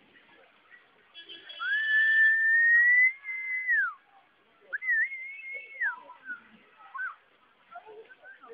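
A person whistling. One long note slides up, holds while creeping higher, then drops away. A shorter wavering note follows, then a few brief chirps.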